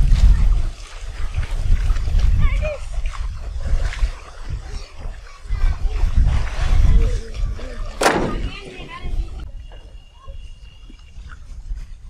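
Voices talking over a low rumble, with one loud, sharp knock about eight seconds in as a log carried down the plank is dropped onto the pile of logs in the boat; the sound then turns quieter.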